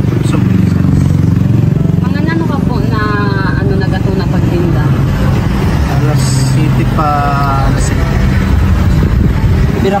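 A man talking in short phrases over a loud, steady low rumble of motor-vehicle engine noise.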